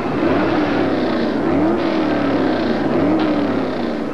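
Race car engines with a note that rises and falls several times over a steady rush of noise.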